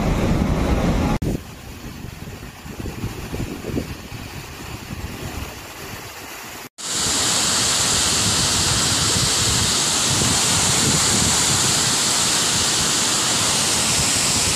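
Floodwater rushing over a stone masonry dam spillway. The first part is quieter and gusty in the low range; after a brief dropout about seven seconds in, the rush of the cascade comes in loud and steady.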